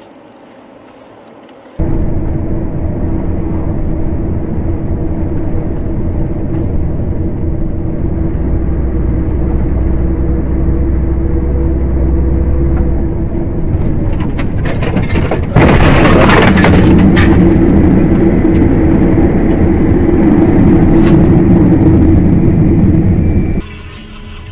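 Loud steady engine and road noise of a moving vehicle, recorded by its dashcam inside the cab. About two-thirds of the way through, a sudden louder rush of noise lasts a second or so. After it the running stays louder until it cuts off just before the end.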